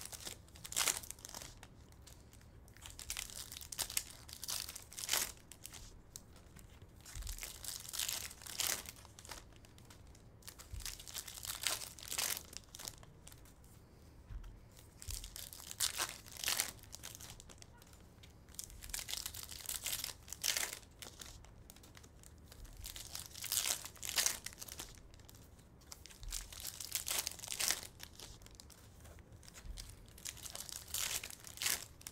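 Foil trading-card pack wrappers being torn open and crinkled by hand, one pack after another, in short bursts of tearing and crinkling every second or two.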